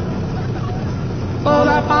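Steady engine and propeller noise from a light aircraft taxiing, heard in a break in a pop song; singing comes back in about a second and a half in.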